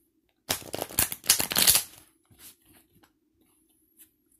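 A deck of tarot cards being shuffled: a quick run of rapid crackling card flicks starting about half a second in and lasting about a second and a half, followed by a few soft taps.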